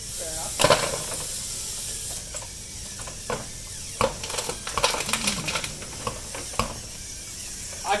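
Small metal-framed robot's electric motors and conveyor mechanism running, with a steady high hiss and several sharp clicks and knocks as its parts move.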